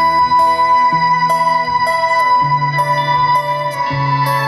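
A small live band playing an instrumental piece: guitars picking notes over a long held high tone and sustained low notes, with the low note moving to a new pitch about halfway through.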